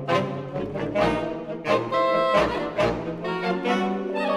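Saxophone ensemble playing sustained chords in several voices, from low bass notes up to high parts, punctuated by sharp accented attacks.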